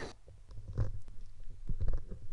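Audio from a festival performance video playing in a web browser cuts off abruptly at the start. What remains is a low steady hum, with a few soft clicks and knocks such as mouse clicks and desk handling.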